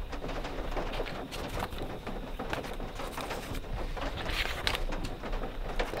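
Paper rustling with scattered soft clicks and crackles as scrapbook pages and an old photograph are handled, with a brighter rustle about four and a half seconds in.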